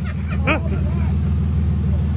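The abused Chevrolet Equinox's engine running at a steady low speed, unrevved, while smoke or steam from coolant pours out of its overheating engine bay with a faint hiss.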